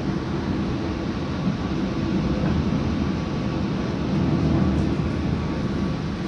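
Steady running noise of a moving passenger train heard from inside the carriage: wheels rolling on the rails and the coach body, heaviest in the low end and swelling slightly about four seconds in.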